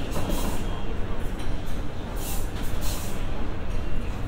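Airport terminal cafe ambience: a steady low rumble with indistinct background voices and a few short bursts of high hiss.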